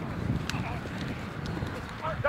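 Outdoor field ambience dominated by wind buffeting the microphone as an uneven low rumble, with faint distant shouts from players and one sharp click about half a second in.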